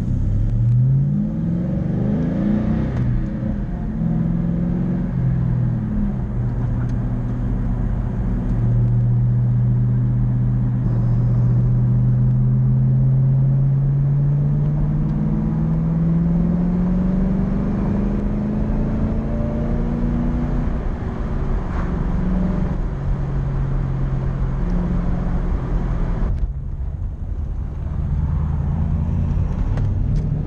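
A 2000 Ford Mustang GT's 4.6-litre V8 with Flowmaster 40 Series mufflers, heard from inside the cabin while driving with the under-hood insulation fitted. The engine note climbs through the gears in the first few seconds, then rises steadily for about ten seconds as the car accelerates toward highway speed. It then falls back to a lower, steadier cruising note.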